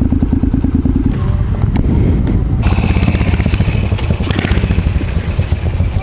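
Motorcycle engine running at low speed: the Honda CTX700N's 670cc parallel twin, rolling slowly past parked bikes. About two and a half seconds in, the sound becomes brighter and noisier.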